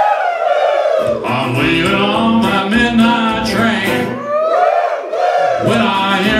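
Live country band with acoustic guitar, electric guitar and upright bass, and several voices joining in a train-whistle "woo". The calls come twice as long notes that rise and fall in pitch, one at the start and one about four and a half seconds in, with the instruments dropping out under each call.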